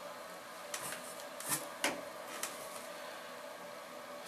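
A few short clicks and rustles of product bottles and packaging being handled while rummaging in a box, over a steady faint room hum.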